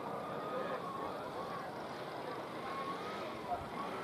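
Steady outdoor background noise with faint, distant voices and a single short knock about three and a half seconds in.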